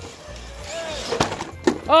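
Two RC rock crawler trucks colliding: a sharp knock about a second in, then a second one half a second later, over background music.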